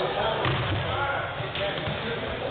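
A basketball bouncing on a hardwood gym floor, two bounces about a second apart, over the chatter of voices in the gym.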